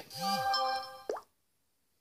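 Short electronic chime: several steady tones held together for about a second, ending in a quick rising plop, after which the audio drops to dead silence.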